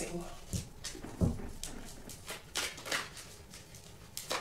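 A deck of tarot cards being shuffled by hand: a string of short, soft card strokes at an uneven pace.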